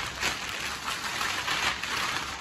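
Irregular rustling and crinkling handling noise, with no steady tone.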